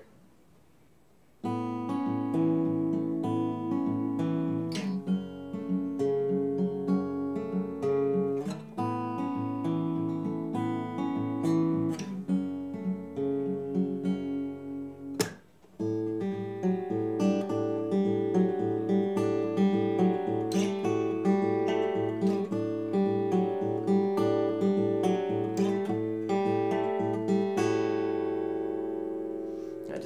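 D'Angelico Mercer SG100 grand auditorium acoustic guitar, solid Sitka spruce top with solid sapele back and sides, played fingerpicked: a steady pattern of plucked notes over a bass line. It starts about a second and a half in, breaks off briefly about halfway, then resumes, and the last chord rings out near the end.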